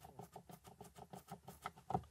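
Plastic rear-view mirror housing of a 2021 Mini Cooper SE being rattled by hand, giving a fast run of faint creaks and clicks, about six or seven a second, the loudest near the end. The creaking shows loose-fitting interior plastic trim.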